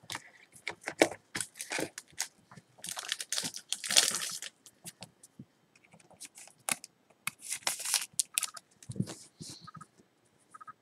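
A trading card slid into a clear plastic sleeve and a rigid plastic top loader by hand: crinkling plastic rustles, scrapes and light clicks, loudest about three to four seconds in and again around eight seconds in.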